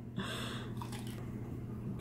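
A bite into a burger wrapped in crisp baby romaine lettuce, a brief soft crunch shortly after the start, then quiet chewing over a faint low steady hum.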